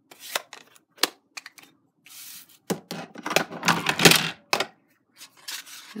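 Paper card stock and plastic craft supplies handled on a cutting mat: sharp clicks and light knocks, with a denser, louder rustle and clatter of card being moved about three to four seconds in.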